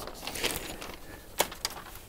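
Soft handling noise and a few short sharp clicks, the loudest about a second and a half in, as a sheet of label backing paper is fed into an inkjet printer's paper tray.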